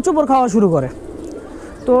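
Domestic pigeons cooing in their loft.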